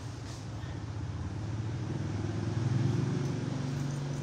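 A low, steady-pitched motor hum that grows louder about two and a half seconds in, then fades away.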